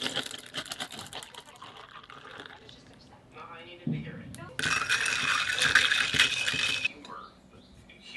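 Hot coffee poured over ice in a small glass pitcher: the ice crackles and clinks as the hot liquid hits it. Later comes a steady pouring stream for about two seconds that stops suddenly.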